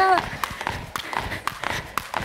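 Two jump ropes slapping a sports-hall floor as two people skip, with their shoes landing: a quick, even rhythm of taps, about four a second.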